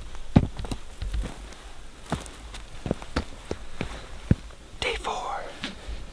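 Irregular footsteps and small knocks from people moving about, with a low rumble underneath and a brief whisper about five seconds in.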